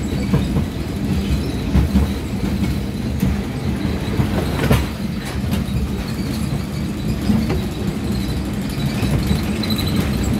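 A roller coaster train rolling along its steel track, heard from on board: a steady low rumble from the wheels, with scattered clicks and one sharper knock about halfway through.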